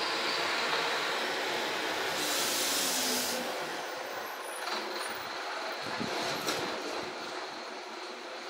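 A heavy vehicle passing in the street outside, a steady traffic rumble that slowly fades, with a short hiss of air brakes about two seconds in.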